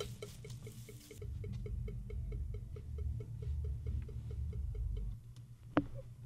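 Rapid, steady ticking of a studio metronome click track, about five ticks a second, faintly bleeding from headphones. A low rumble runs underneath through the middle, and a single sharp click comes near the end.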